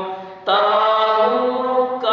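A man's unaccompanied melodic religious chanting, solo, in long held notes; he breaks off briefly for breath and starts a new line about half a second in.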